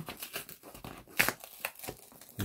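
Corrugated cardboard shipping box being pulled and torn open by hand at its tear strip: a string of irregular crackles and rips, the sharpest about a second in.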